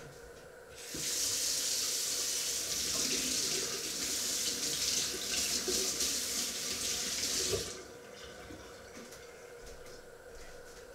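A water tap running into a sink: a steady rushing hiss that starts about a second in and is cut off abruptly about three-quarters of the way through.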